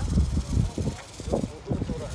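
Wind buffeting the microphone in uneven gusts, with brief fragments of voices talking.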